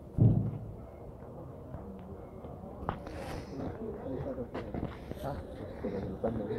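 A single loud, low thump just after the start, then faint voices of people talking, with a few small clicks.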